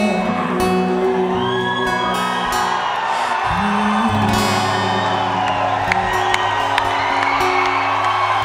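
A man singing a slow song live into a microphone over acoustic guitar accompaniment.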